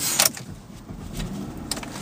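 A few clicks of the key in the ignition, then the 2008 Buick Enclave's 3.6-litre V6 starting and running at a low idle, the rumble building from about half a second in.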